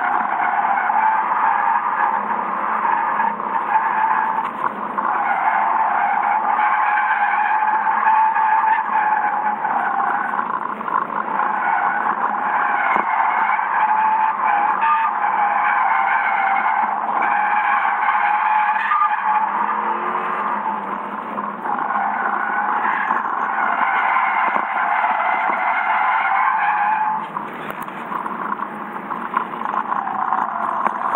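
Tyres of a Lexus sedan squealing almost without pause as it is cornered hard, heard from inside the cabin over the engine. The squeal eases off briefly a few times, most clearly near the end.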